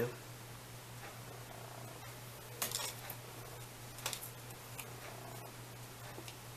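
Steady low electrical hum with a few faint clicks and rustles of small tools and a plastic cup of water being handled.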